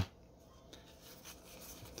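Faint rustling and light scraping of Pokémon trading cards sliding against each other as a hand-held stack is shuffled, card from front to back, growing a little louder toward the end.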